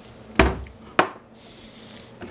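Two knocks on a kitchen countertop about half a second apart: a ceramic teacup set down and a plastic drink bottle taken hold of. The first is duller, the second a sharp click.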